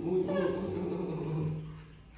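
A drawn-out vocal sound held at a steady pitch for about a second and a half, with a brief higher squeal about half a second in, then fading out.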